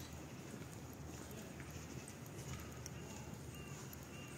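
Footsteps walking on brick paving stones, faint and rhythmic, under a low outdoor background hum.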